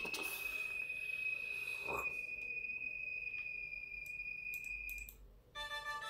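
A steady, high-pitched electronic-sounding tone holds one pitch and stops about five seconds in, with a few soft rustles of movement. Music starts just before the end.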